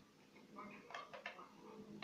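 Faint handling clicks of a headphone plug and jack adapter being pushed into a metal detector's headphone socket: a few small clicks about a second in.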